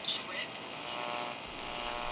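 Steady radio hiss with faint steady tones from an MRL No.18 amplified crystal set played through a loudspeaker, as the tuning dial is turned. A faint station voice fades in the first half-second.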